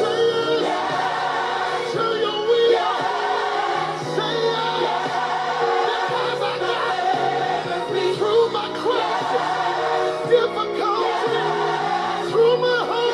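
Gospel choir singing over instrumental accompaniment.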